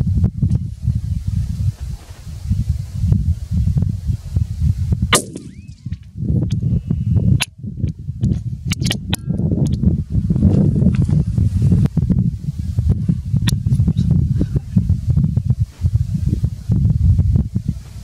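Wind buffeting the microphone outdoors: a loud, gusting low rumble that rises and falls irregularly. A few sharp clicks and knocks come through it, the loudest about five seconds in.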